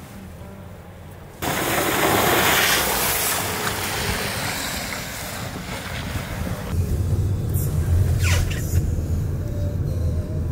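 Car tyres and road noise on a wet road: a loud, even hiss that starts suddenly about a second and a half in, changing about two thirds of the way through to a deeper rumble with a couple of short whooshes.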